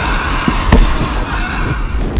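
Layered horror-film sound effects for a creature's attack: a steady rushing noise over a low rumble, with one sharp hit about three quarters of a second in.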